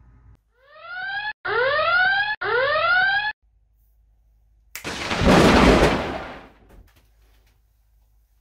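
Three rising whooping tones of about a second each, back to back, followed by a loud explosion-like burst of noise about two seconds long: edited-in comedy sound effects.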